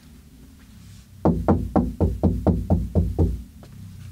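Rapid knocking, about ten quick, evenly spaced knocks over some two seconds, starting a little over a second in.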